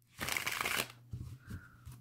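A deck of tarot cards being riffle-shuffled by hand: a short burst of flicking card edges in the first second as the two halves are pushed together, then a few soft taps and rubs as the deck is squared.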